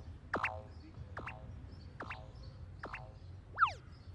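Cartoon hopping sound effect: a springy rising boing repeats about every 0.8 s, four times, each fainter than the last. A quick falling whistle follows near the end.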